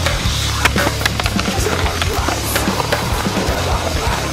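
A fingerboard rolling and clacking on a tabletop, with many short sharp clacks of its small deck and wheels, over background music with a steady bass.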